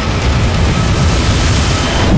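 Storm-at-sea sound effects: a loud, dense rush of wind and breaking waves over a deep rumble, swelling brighter toward the end and then cutting off sharply.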